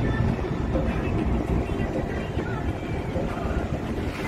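Steady low rumble of a moving vehicle, with some wind on the microphone.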